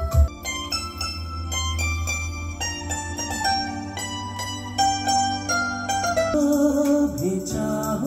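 Recorded music played loudly through Panasonic SB-VK800/SB-W800 hi-fi loudspeakers and heard in the room: a quick run of short notes over a steady bass, changing to a held note about six seconds in.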